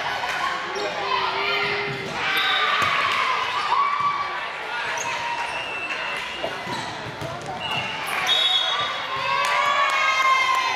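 Volleyball rally in a gymnasium: sharp smacks of the ball being hit and players calling and shouting over one another, echoing in the hall. The shouting and cheering grow louder near the end as the point is won.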